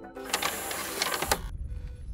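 Static-noise glitch transition effect: a harsh hiss full of rapid crackles for about a second and a half that cuts off suddenly, leaving a low rumble.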